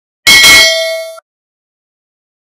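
Notification-bell sound effect: a single loud metallic ding, struck about a quarter second in and ringing with several bell tones for about a second before cutting off abruptly.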